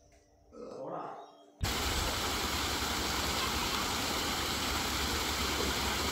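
Steady rushing of water flowing along a concrete canal, starting abruptly about a second and a half in.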